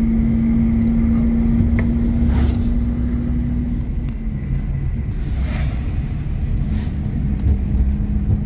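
Car engine and road rumble heard from inside the cabin while driving, with a steady engine hum that drops slightly in pitch about four seconds in.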